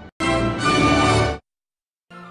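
Short television studio logo music jingle, about a second long, that cuts off abruptly into silence. It follows the tail of another logo's music that ends right at the start.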